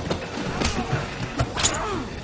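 Film sound effects of a close-quarters fistfight: several sharp hits and scuffles, with grunts.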